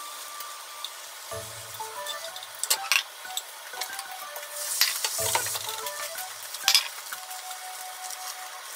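Beaten egg sizzling in a hot rectangular tamagoyaki pan, with a burst of sizzle about five seconds in as a new layer of egg goes in. Chopsticks click sharply against the pan and the egg jug a few times.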